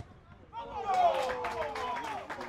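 Spectators shouting, with one long cry falling in pitch, and scattered clapping starting about a second in, in reaction to a shot on goal.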